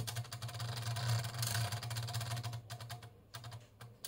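Stepper motor and gear-driven mechanical drum counter of a 1970 Mettler TM15 temperature display ticking rapidly as the digits step up, the reading tracking a PT100 sensor being warmed by hand. A steady low hum runs underneath, and the ticking thins out near the end.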